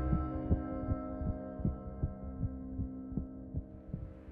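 Film score: a sustained ambient drone fading out under a low, heartbeat-like thumping, about two or three beats a second.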